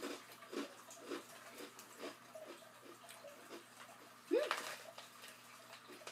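Faint chewing of crunchy red rice crackers, soft crunches coming about twice a second.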